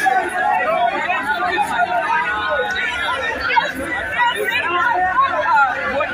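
A crowd of students, many voices talking and calling out at once in an unbroken babble.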